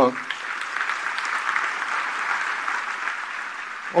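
Audience applauding: a steady clapping that builds right after a brief spoken "uh" and carries on until the talk resumes.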